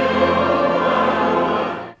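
Church choir of boys' and men's voices singing, holding a chord that dies away just before the end.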